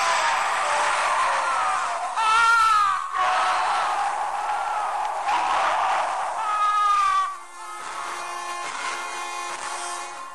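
A terrifying scream used as a horror sound effect, loud and wavering in pitch, with sharp cries peaking twice. About seven and a half seconds in it drops away to quieter held tones of eerie music.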